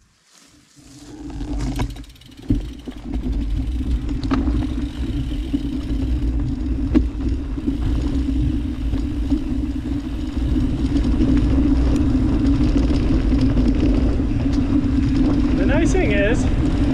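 Mountain bike rolling down a dirt singletrack, heard as wind and tyre-and-trail rumble on the bike's camera microphone. It builds from near quiet over the first two seconds to a steady rush with a low hum, with a few short knocks from the trail.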